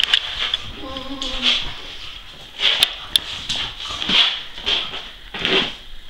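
Cocker spaniel making playful noises while rolling on his back: a short whine about a second in, then a string of irregular short breathy huffs and snuffles.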